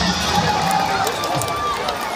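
A large crowd in the stands making a steady din of many voices talking and calling out at once.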